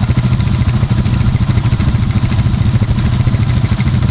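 Polaris ATV engine idling steadily, with an even low exhaust pulse.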